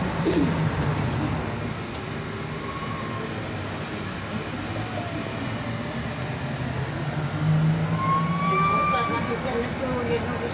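Interior running noise of a Škoda 27Tr Solaris electric trolleybus under way, heard at its articulation joint, with passengers' voices over it.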